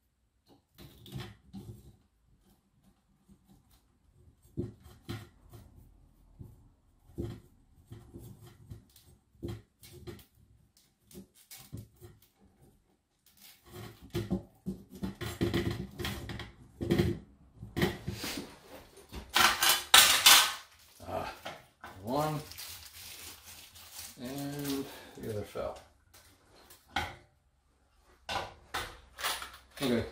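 Small clicks and ticks of hands working stiff electrical wires and plastic twist-on wire connectors at a wall box, growing busier past the middle with a loud scratchy rustle about two-thirds of the way through. A few muttered vocal sounds follow near the end.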